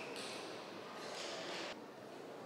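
Spectators applauding a won point in a table tennis hall, in two swells, the second cut off suddenly near the end.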